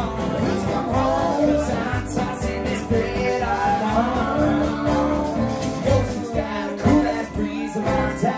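A live folk-rock band playing a song with a drum kit keeping a steady beat, upright bass, acoustic guitar and keyboard, with singing.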